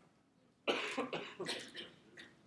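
A student's voice, faint and distant from the microphone, asking a question for about a second.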